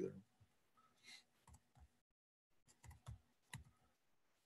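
Near silence broken by faint computer clicks: a few in the middle, then a quicker cluster near the end, as the presentation is advanced to the next slide.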